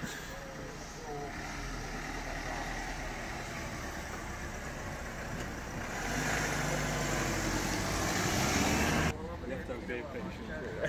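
A road vehicle's engine running with a steady low hum. It grows louder with a rising rush of noise over the last few seconds, then cuts off suddenly about nine seconds in.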